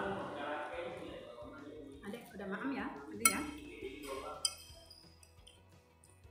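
Metal cutlery clinking against a dinner plate: two sharp clinks about a second apart, each ringing briefly.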